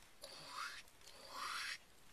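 Two soft scraping strokes of a spatula dragged across a fibreglass hull's freshly rolled-on wet resin, squeegeeing off the excess.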